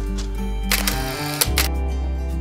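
Background music with a steady bass line, with a camera shutter sound a little under a second in and a second shutter click about half a second later as a selfie is taken.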